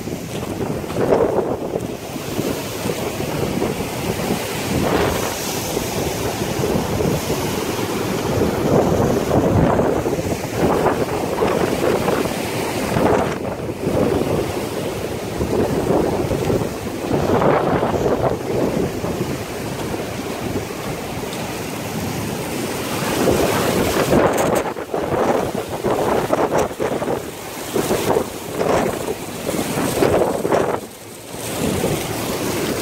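Rough, churning surf breaking close by, mixed with gusty wind buffeting the microphone in surges every second or two.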